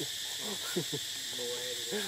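Steady high-pitched drone of forest insects, with a few short, low hoot-like vocal sounds and one brief held note near the end.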